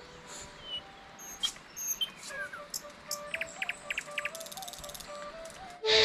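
Forest birds chirping in short, scattered high calls, with a quick trill about three seconds in and a rapid high buzzing trill soon after. Faint background music with a slow stepping melody plays underneath.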